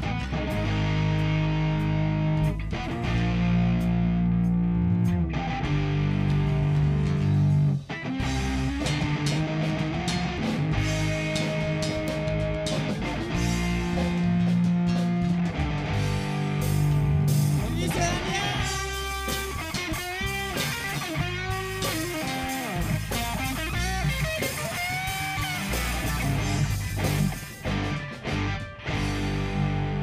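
Amplified live rock band playing: electric guitars, bass guitar and drum kit with long held low notes. About two-thirds of the way in, a higher wavering melody line joins for several seconds.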